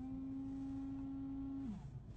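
Saab car horn sounding one steady, fairly pure tone for under two seconds, its pitch sagging as it cuts out.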